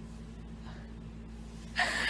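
A woman's quick, sharp intake of breath near the end, over a faint steady low hum.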